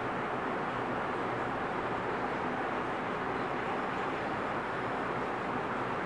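Steady background noise: an even, unchanging hiss with no distinct events.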